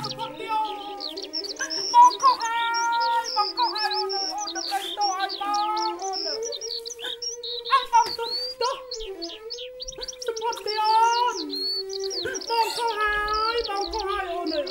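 Many rapid, high bird-like chirps and twitters over a sustained, slowly wavering melodic tone.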